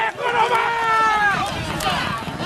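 Spectators yelling drawn-out shouts as racehorses gallop past on a dirt track, with hoofbeats on the dirt under the voices.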